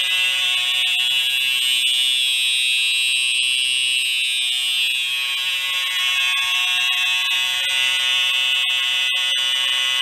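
Fire alarm horn on a Simplex 4004 system sounding continuously: one steady, unbroken high-pitched tone with no pauses.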